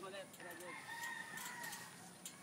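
A rooster crowing once, faint: one long, drawn-out call starting about half a second in.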